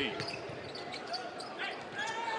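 Court sound from a basketball game: a basketball being dribbled on the hardwood under a steady arena crowd noise.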